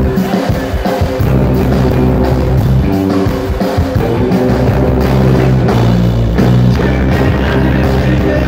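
Psychobilly band playing live and loud: electric guitar and bass guitar over a steady beat, with a singing voice.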